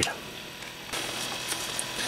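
A few faint ticks over low room noise as a power cable is handled.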